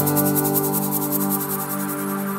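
Instrumental music: synthesizer chords held under a fast, fluttering high pulse, slowly getting quieter.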